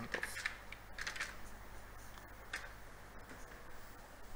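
Computer keyboard keys clicking as a short word is typed, in a few quick clusters of keystrokes during the first two or three seconds.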